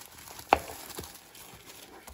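Clear plastic wrap being peeled off a cardboard box set, rustling faintly, with one sharp crackle about half a second in and a softer one around a second.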